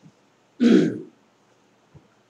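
A person clearing their throat once, a single short, loud burst about half a second in.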